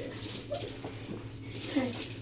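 Two brief, faint vocal sounds from a person, one about half a second in and one near the end, over a low steady room hum.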